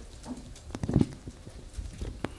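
A few light knocks and clicks, the loudest about a second in.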